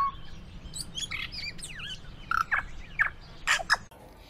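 Birds chirping: a scattering of short, quick calls and sweeping whistles, several in a row near the end.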